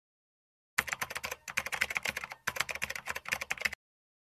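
Keyboard-typing sound effect: rapid keystroke clicks in three quick runs separated by two brief pauses, starting just under a second in and cutting off sharply shortly before the end.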